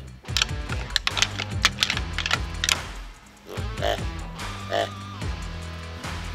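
Deer antlers rattled together in a quick, irregular run of hard clicks and clacks for the first few seconds, imitating two bucks sparring to draw in a rutting buck. Background music plays underneath.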